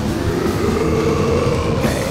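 Death metal: distorted guitar, bass and drums, with a long held note that bends slowly in pitch over the dense wall of sound.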